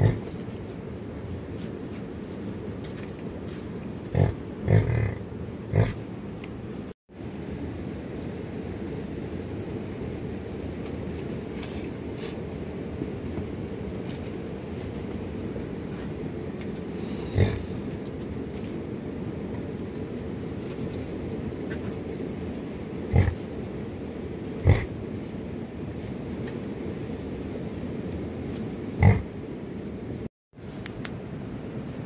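Penned young livestock grunting, a handful of short grunts spread through, over steady low background noise.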